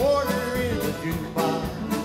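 Live country band playing electric guitar, fiddle and drum kit, with a man singing.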